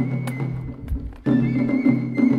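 Japanese festival hayashi music: a bamboo transverse flute holding a high note over sharp strikes on small rope-tensioned shime-daiko drums. The ensemble drops off briefly around the middle and comes back in louder a little after halfway.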